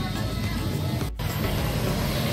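Background music, then an abrupt cut about a second in to outdoor street noise with a motor scooter passing close by.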